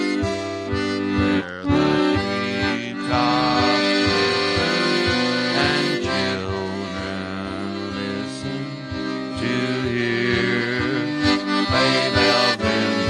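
Piano accordion playing a melody with chords, with short low bass notes pulsing at an even beat underneath.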